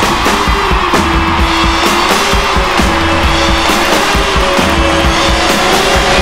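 Loud rock music: a dense wash of distorted guitar over drums, with one long held note running through most of it.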